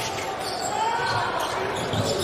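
Live basketball court sound during play: a basketball being dribbled on a hardwood floor, echoing in a large hall.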